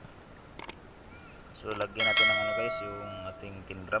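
Subscribe-button sound effect: a few sharp mouse clicks, then a bell ding about two seconds in that rings out and fades over a second or so.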